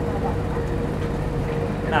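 Boat engine running steadily under way, a low rumble with a steady hum above it.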